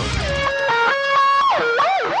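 Electric guitar played with its effects pedal switched off: a thin single-note line of held notes, stepping up to a higher note and then sliding down and back up.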